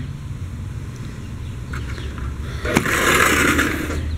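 A sliding screen door being rolled open. It starts with a click about two-thirds of the way in, then about a second of rolling scrape along its track, over a steady low background rumble.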